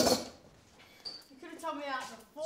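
A person's voice, with a brief noisy rush at the very start and a faint short clink about a second in.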